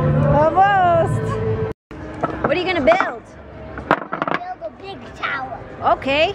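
Young children's high voices calling out over steady background music. After a brief cut, more children's voices with a few short knocks of large wooden blocks being handled.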